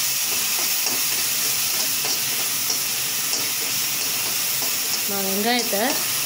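Chopped cabbage and egg sizzling in oil in a kadai as they are stirred: a steady frying hiss with a few light scrapes from the stirring.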